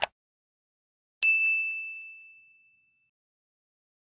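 A short click, then about a second later a single bright bell ding that rings out and fades away over under two seconds: the sound effect of an animated subscribe-and-notification-bell button.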